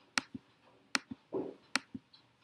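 Computer keyboard and mouse clicks: three sharp clicks a little under a second apart, each followed by a softer click, with a brief low sound between the second and third.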